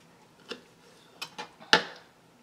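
Kitchen knife chopping through raw burbot fillet onto a cutting board: about four short, sharp taps, the loudest near the end.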